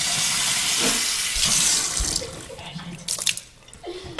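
Water running from a tap into a sink, a steady rush that fades away a little over two seconds in. A few light knocks follow near the end.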